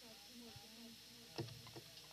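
Very quiet pause after the music stops: a faint voice in the room, then a single sharp knock about a second and a half in, followed by a few light clicks.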